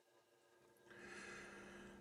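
Near silence, then a faint breath drawn in from about a second in.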